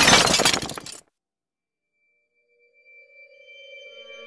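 A glass-shattering sound effect, loud at its start and dying away within about a second, then silence. Near the end, a drone of several held musical tones fades in and grows steadily louder.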